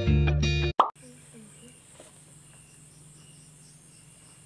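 Guitar background music cuts off less than a second in with a short 'plop' transition effect. Then comes a quiet, steady insect chorus: crickets keeping up a high continuous hum with faint chirps repeating about twice a second.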